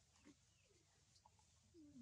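Very faint: scattered small ticks, then near the end a low animal call that falls slightly in pitch.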